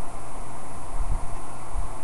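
Steady hiss with a faint low hum: the background noise of a webcam microphone.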